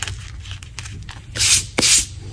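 Two chalk-dusted hands brushed against each other twice near the end, two loud dry rubs about a third of a second apart, after soft crackling of crushed gym chalk being handled.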